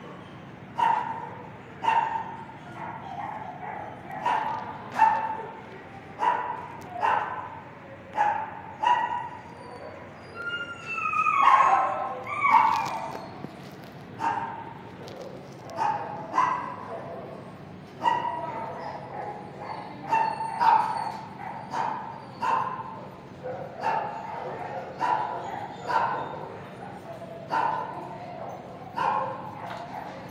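Dogs barking repeatedly in a shelter kennel block, a sharp bark about once a second, with a longer wavering yelp about eleven seconds in.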